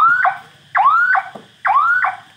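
Electronic turn-signal buzzer on a công nông farm truck chirping in time with the flashing signal lights. Each chirp is a rising sweep with a short blip after it, about one a second, three in a row.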